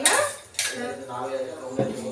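Stainless-steel kitchen utensils clinking: a spoon against a small steel container, two sharp metallic clinks, one right at the start and another about half a second in.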